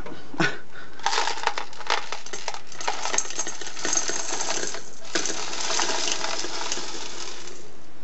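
Small stone beads poured from a folded paper into a small glass vase, a dense rattling clatter of beads hitting glass and each other. It comes in two pours with a brief break about five seconds in.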